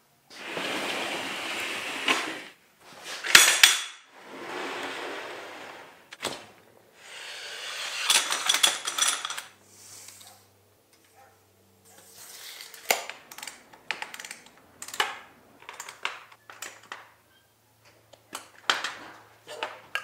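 Aluminum extrusion frame and hardware being handled during assembly: long sliding scrapes early on, a sharp clank a little over three seconds in, then scattered metallic clicks and knocks.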